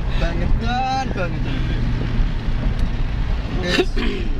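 Steady low drone of a car's engine and tyres heard inside the cabin. A man's voice, laughing or calling out, comes in the first second, and a short voice comes near the end.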